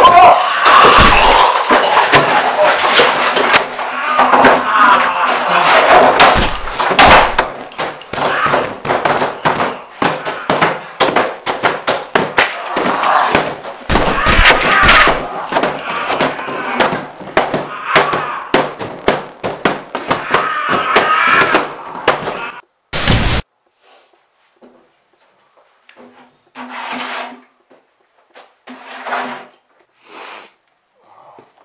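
Loud, jumbled voice sounds mixed with repeated knocks and crashes, cut off about 23 seconds in by a short, very loud burst. After that it is quiet apart from a few brief faint sounds.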